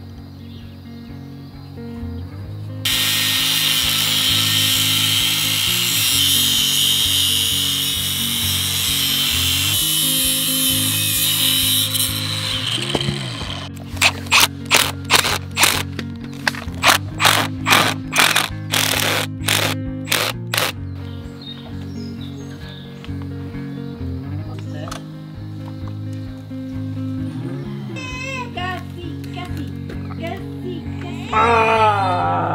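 Background music throughout. A loud steady hiss fills roughly the first third, then a cordless drill runs in short trigger bursts, about two a second for some seven seconds, driving a fastener into a square steel post.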